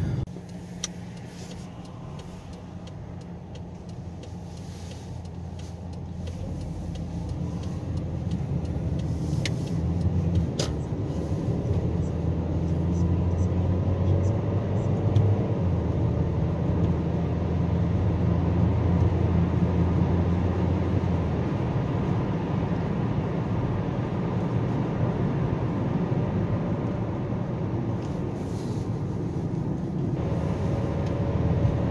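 A car being driven on the road, heard from inside the cabin: a steady low engine and tyre rumble that grows louder over the first ten seconds or so as the car gathers speed, then holds steady.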